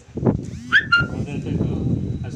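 A man's voice speaking, with a brief high chirp about three-quarters of a second in.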